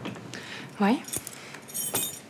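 A brief high, metallic jingle of small metal objects near the end, following a single spoken 'oui'.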